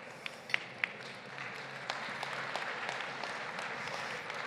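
Audience applauding: a few scattered claps at first, then more hands join and it spreads into steady applause about a second and a half in.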